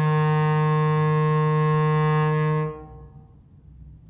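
Clarinet holding one long, steady low note for about two and a half seconds, then stopping, with the room's echo dying away after it.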